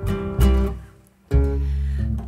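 Acoustic guitar chords and plucked double bass notes in a havanera accompaniment, with no singing. The chords ring out and fade to a brief pause about a second in, then the guitar and bass come in again.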